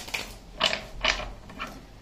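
A deck of tarot cards being shuffled by hand, in about four short strokes spaced roughly half a second apart.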